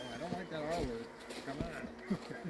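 Indistinct voices of men talking at a distance, the words not made out.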